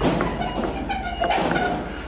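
Loaded flatbed store cart rolling over a concrete floor, with a knock at the start.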